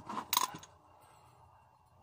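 A brief sharp click about a third of a second in, then a faint steady background hum.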